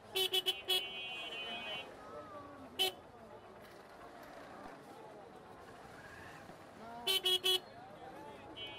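Motorcycle horn beeping in short toots through stop-and-go market traffic. Three quick beeps are followed by a held beep of about a second, then a single beep, and four quick beeps near the end.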